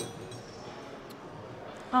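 Low gym background noise with a single faint click about a second in. A man's voice starts just at the end.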